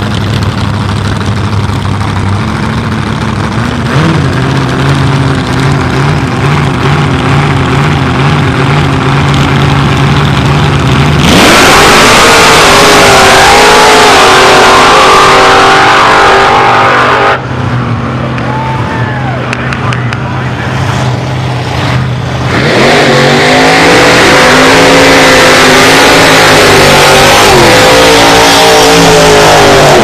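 Supercharged AA/gas-class drag car engine idling at the start line, with a short rise in revs about four seconds in. About eleven seconds in it launches at full throttle, very loud, its pitch bending up and down as it pulls away for about six seconds. After a quieter stretch of engine sound, another gasser engine runs loud at full throttle from about twenty-three seconds to the end.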